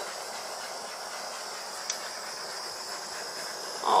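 Small handheld torch hissing steadily as its flame is passed over wet acrylic pour paint to bring up cells.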